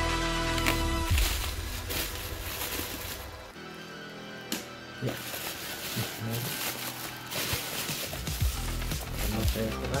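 Black plastic mailing bag crinkling and rustling as it is handled and opened. Background music plays underneath and stops about a second in.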